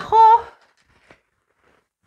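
A woman's voice ending a spoken word in the first half second, then near silence with one faint click about a second in.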